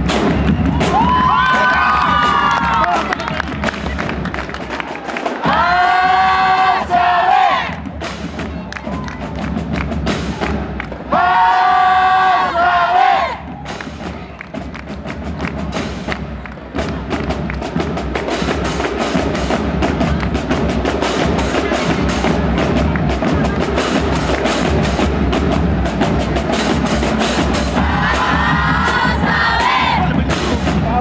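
A school band of brass and saxophones plays loud held chords, each lasting about two seconds and separated by short gaps. From about halfway through, an audience cheers and applauds steadily. Near the end the band starts playing again under the applause.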